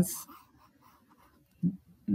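A quiet pause with faint scratching of a stylus on a tablet screen, as handwriting is erased from a digital slide. A brief vocal sound from the lecturer comes near the end.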